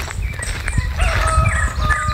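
A rooster crowing: one long, held call starting about halfway through, with small birds chirping around it.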